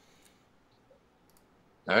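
Low room noise with a few faint, sharp clicks scattered through it, then a voice saying "all right" right at the end.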